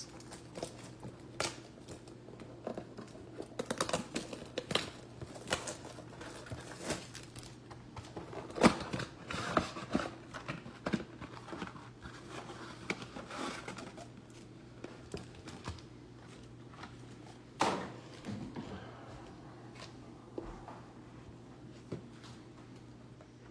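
Clear plastic shrink wrap being peeled and crumpled off a cardboard trading-card box, crinkling and crackling in irregular bursts, with sharper cracks about 9 s and 17 s in. A steady low hum runs underneath.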